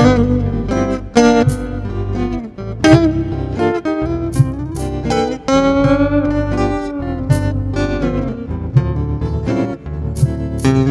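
Electric blues guitar lead on a Carvin guitar played through a Yamaha THR10 amp: picked single notes and short flurries, with one long bent note near the middle that rises, holds and slowly sinks back. Under it runs a steady low rhythm part replayed from a Boomerang looper.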